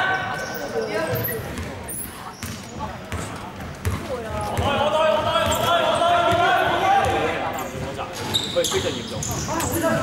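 A basketball bouncing on a hardwood gym floor, each bounce echoing in the large hall, with players' voices calling out on court, loudest for a few seconds around the middle.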